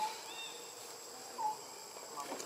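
Steady high-pitched insect drone with two short downward-sliding chirping calls, one at the start and one about a second and a half in.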